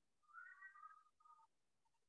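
A faint, high whistling sound lasting about a second, followed by a shorter, lower pair of tones.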